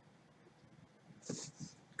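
Near silence, then a short, faint intake of breath about a second and a half in, just before speech resumes.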